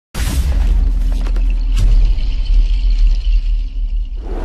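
Channel intro sting: a deep bass rumble that hits suddenly at the start with a brief whoosh, with a few sharp glitchy clicks about a second and a half in.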